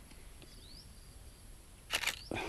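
Quiet open-air background with one faint, short rising whistle about half a second in, and a sharp knock-like sound right at the end.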